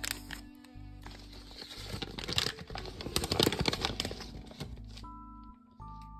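Paper packaging and a padded bubble mailer rustling and crinkling as hands handle them, busiest in the middle. Soft background music with long held notes plays throughout.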